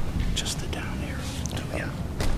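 Hushed, whispered speech: two men talking quietly beside a podium microphone.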